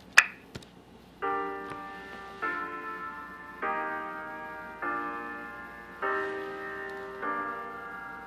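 Notation-software playback of a four-part chord progression in G minor: six chords about 1.2 seconds apart, each starting sharply and fading, that step through a descending-thirds sequence, I–V–VI–III–IV–I. A sharp click comes just before the first chord.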